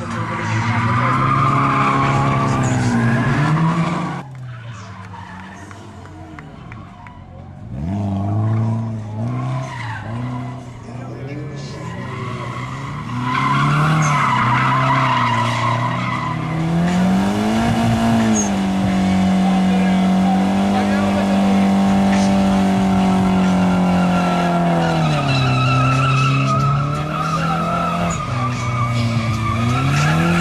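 Drift cars' engines revving hard while the rear tyres squeal and slide. The engine note rises and falls, drops away for a few seconds early on, then is held high for a long stretch in the middle before falling and rising again near the end.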